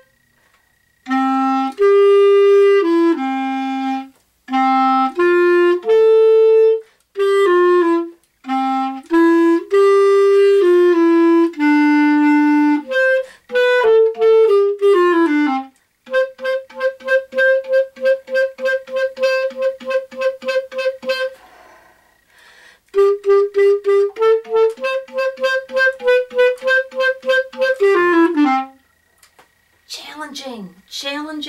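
Solo clarinet playing a lively beginner-band melody, the A part of a duet, in phrases of slurred notes. Partway through come runs of quick repeated notes, about four a second, and the playing stops with a falling slur near the end.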